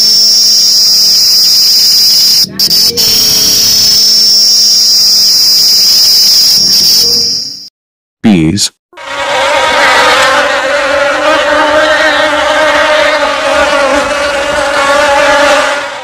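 Cicadas singing: a loud, steady, high-pitched buzz that breaks briefly about two and a half seconds in and stops about seven and a half seconds in. After a short pause, a crowd of honeybees hums at a hive entrance, a lower, steady buzz lasting until near the end.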